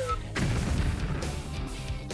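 Explosion sound effect for a prop dynamite blast: a sudden burst of noise about a third of a second in that dies away slowly, over background music.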